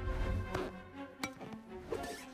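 Film score music with held notes, and a single sharp click a little past the middle.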